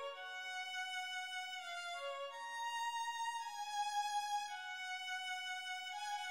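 A violin plays a single unaccompanied melodic line of long held notes, changing pitch every second or two: the fugue subject at the start of a neo-baroque trio sonata's fugal movement, before the other voices come in.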